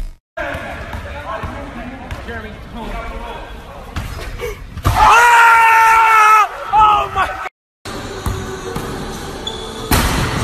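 Short basketball clips cut together: crowd and bench noise in an arena, then a long, loud, high-pitched shout of "wow" about five seconds in, then a basketball bouncing on a gym floor near the end.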